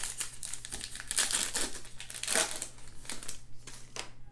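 Shiny plastic wrapper of a trading-card pack being torn open and crinkled by hand, a dense run of crackles that thins out near the end as the cards come free.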